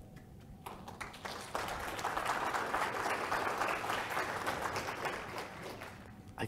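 Audience applauding. The clapping starts under a second in, swells to full strength about a second and a half in, and dies away toward the end.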